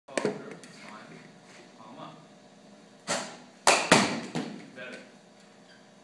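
A baseball bat swishing through the air in a practice swing about three seconds in, followed by two loud sharp knocks in quick succession; another sharp knock comes right at the start.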